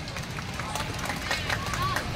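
Open-air venue ambience: a low rumble with scattered short clicks and faint, brief distant voices.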